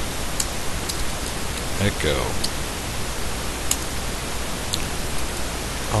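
Separate computer keyboard keystrokes, about five sharp clicks spread over a few seconds, over a steady hiss.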